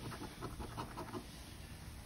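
A coin scraping the latex coating off a scratch-off lottery ticket in a quick run of short, faint strokes.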